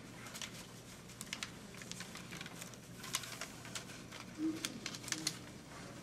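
Quiet room with scattered, irregular light clicks and rustles of pens and paper while ballots are marked, with one short low sound about four and a half seconds in.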